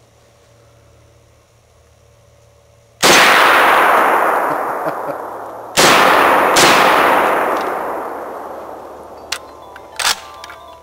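Three rifle shots from a Ruger Mini-30 in 7.62x39mm: one about three seconds in, then two more in quick succession about a second apart, each report followed by a long echo fading slowly.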